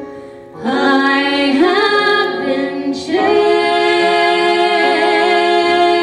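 Two women singing a show-tune duet in harmony: after a brief lull at the start, a sung phrase moving through several notes, a short break about three seconds in, then long held notes with vibrato.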